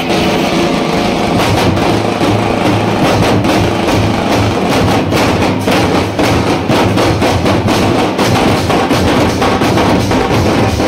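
A troupe of drummers beating large stick-played dhol drums in a fast, loud, unbroken rhythm, with a large brass cymbal clashing along.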